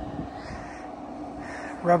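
A steady low hum, most likely the fan of the running Traeger pellet grill, over faint outdoor background noise. A spoken word comes in at the very end.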